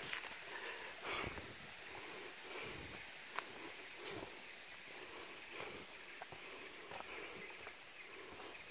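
Quiet forest-side ambience with soft footsteps on a dirt path and a couple of small sharp clicks.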